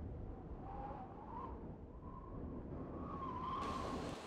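Faint howling-wind sound effect: a low rumble with a thin, wavering whistle that rises a little and wanders in pitch. Near the end a faint hiss joins it.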